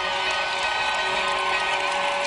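A TV football show's opening sting: music over a stadium crowd cheering, at a steady level.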